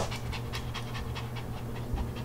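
Small dog panting rapidly, about six or seven quick breaths a second.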